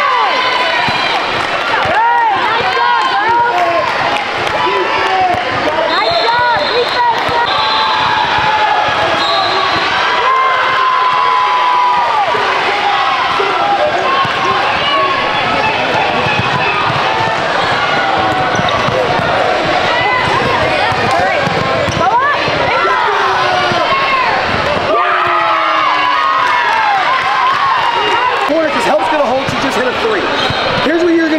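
Live sound of an indoor basketball game on a hardwood court: a basketball bouncing, many short sneaker squeaks, and players and spectators talking and calling out.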